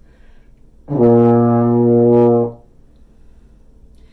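Baritone horn playing a single sustained B flat, open with no valves pressed, starting about a second in and held steady for about a second and a half before stopping.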